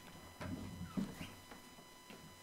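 Faint knocks and shuffling of a person getting up from a table and moving away from the microphone, with two soft knocks about half a second and a second in.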